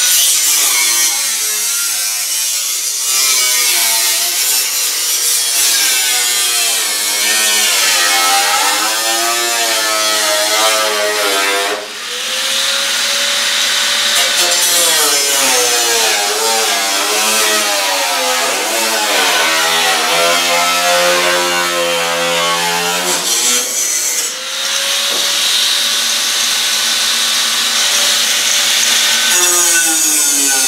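Corded electric angle grinder with a thin cutoff disc cutting through the sheet steel of a truck's rusted cab corner. The motor whine rises and falls as the disc bites and bogs under load, easing off briefly twice, at about 12 and 24 seconds.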